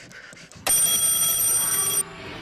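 A loud, steady high-pitched ringing, like an electric alarm bell, starts suddenly about two-thirds of a second in and cuts off abruptly at the end.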